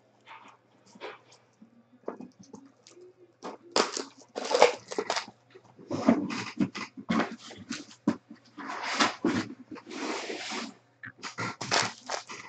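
Plastic wrap and foil card-pack wrappers crinkling and tearing in irregular bursts as they are handled and ripped open, with a longer stretch of crackling about nine seconds in.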